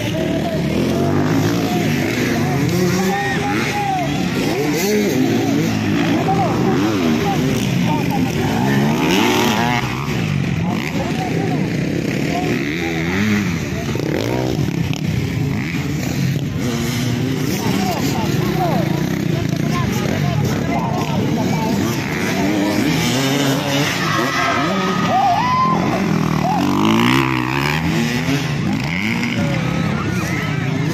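Several motocross dirt bike engines revving up and down and overlapping as the bikes race over a dirt track, with a crowd's voices mixed in.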